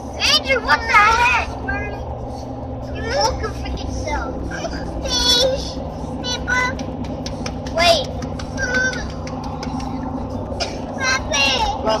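High-pitched children's voices in short unintelligible snatches over the steady drone of a car's engine and tyres at highway speed, heard from inside the cabin.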